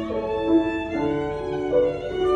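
Violin bowing a melody of held notes that change about twice a second, with grand piano accompaniment underneath.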